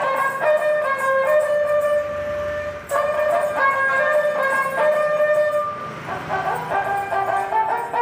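Ravanahatha, a Rajasthani bowed folk fiddle, playing a melody of held notes that step from one pitch to the next, with a brief break about three seconds in.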